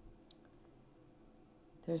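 Quiet room tone with two faint, brief clicks close together about a third of a second in.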